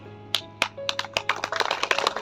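An irregular run of sharp clicks and taps, several a second, with a short steady tone about a second in, over a faint steady hum.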